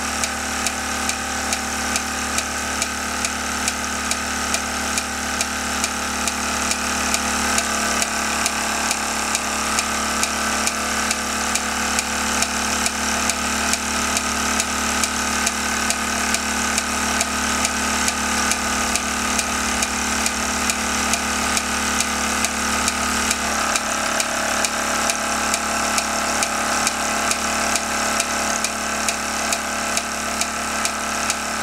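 Circa-1975 Mamod Minor 2 toy steam engine running, rebuilt with machined bearings, driving a lineshaft and small workshop models through belts and pulleys. A steady mechanical whir with a regular tick about twice a second; its tone shifts a little about a quarter of the way in and again near the three-quarter mark.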